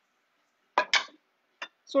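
Kitchenware clinking: two quick clinks close together about a second in, then a single faint tap.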